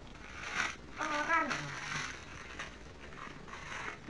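Crumpled paper wrapping rustling and crinkling as it is handled, in several short bursts. A brief voice sound comes about a second in.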